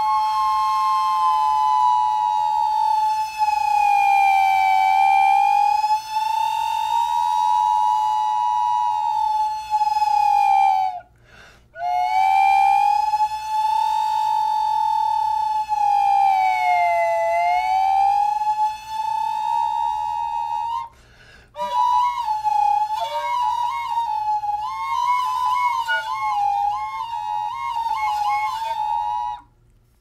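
A homebuilt double wind instrument, a PVC recorder joined to a metal-tube slide pipe with a wooden dowel, sounding two notes at once: one held steady while the other glides slowly above and below its pitch, for an eerie effect. The playing breaks briefly twice, about eleven and twenty-one seconds in, and in the last stretch the sliding note wavers faster.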